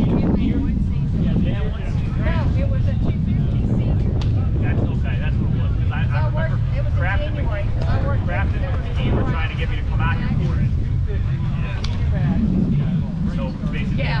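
Steady low rumble of wind buffeting the microphone, with indistinct voices of players chattering across the field.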